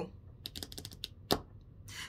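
Tarot cards being handled on a table: a few light clicks about half a second in, then a single sharper tap about a second later.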